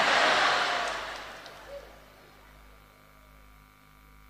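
Audience applause that fades out over about two seconds, leaving a faint steady hum.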